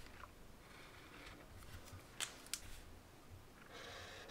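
Faint scratchy rustle of felt-tip marker tips stroking across thin paper. Two sharp clicks come a little after two seconds in.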